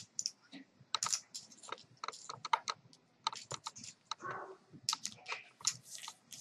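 Poker chips clicking against each other as they are pushed and stacked, a quick irregular run of sharp clacks.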